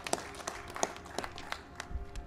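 Sparse applause from a small group of people clapping, individual claps heard separately and irregularly.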